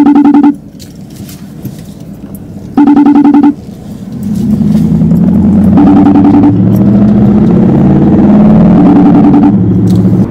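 A car horn blasting four times, about three seconds apart, each blast short and very loud. From about four seconds in, a loud vehicle engine or exhaust runs underneath with a wavering pitch.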